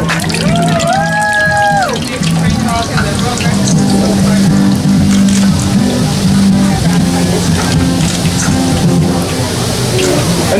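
Funnel-cake batter frying as it is poured into a large pan of hot oil: a steady sizzle with many small crackles that thickens from about three seconds in as more batter hits the oil. Background music plays throughout, with a held vocal note in the first two seconds.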